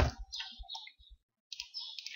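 A single sharp click at a computer (a key or mouse button) at the start, followed by a few faint soft clicks.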